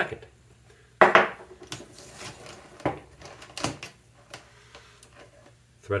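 Handling noise of small metal lamp hardware and tools on a plywood work board: a sharp knock about a second in, then a few light clicks and rattles as the threaded rod and ring are picked up.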